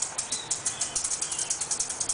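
Maracas shaken in a fast, even rhythm, about seven crisp strokes a second.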